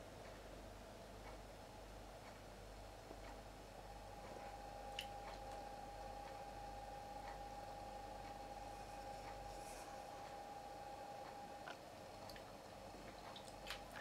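Quiet room tone with a few faint soft clicks and wet smacking sounds from a liquid matte lipstick applicator wand being drawn over the lips. A faint steady tone hums in the background through the middle stretch.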